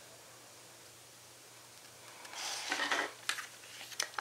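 Scissors cutting through cardstock: a short rasping cut about two seconds in that lasts about a second, followed by a couple of light clicks.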